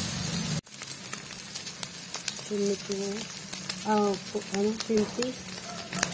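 Diced pork with garlic, onion and ginger sizzling in a metal wok, with the clicks and scrapes of a metal spatula stirring it. The sound cuts out abruptly for a moment just over half a second in, then the frying carries on.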